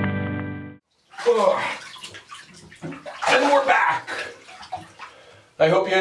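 Background music with held notes cuts off about a second in; then water sloshing and splashing in a bathtub as someone moves in it, and a man starts talking near the end.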